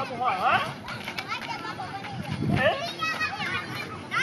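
Children's high voices shouting and calling out at play, with sharp rising calls.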